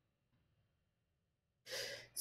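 Near silence, then a short breath near the end.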